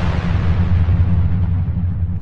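Logo intro sound effect: a deep, steady bass rumble under a hissing swell that fades away.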